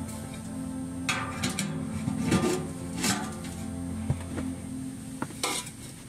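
Thin stainless-steel stove body and flue pipe sections clanking and rattling as they are handled and fitted together, in several separate knocks, over background music.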